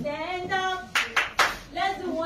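Three or four sharp hand claps about a second in, over children's voices singing.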